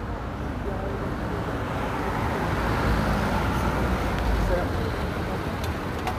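A motor vehicle passing on the street: a low rumbling traffic noise that swells to its loudest about halfway through and then fades, with faint voices underneath.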